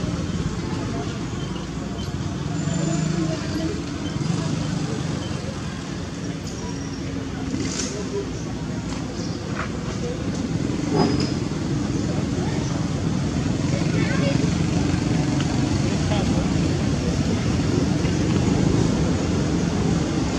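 Outdoor background of distant voices and passing road traffic, a steady low rumble with a few faint clicks.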